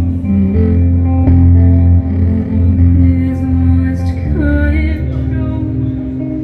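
Live dark-folk band music: heavy sustained bass notes changing about once a second under held guitar and synth tones, with a voice singing from about four seconds in.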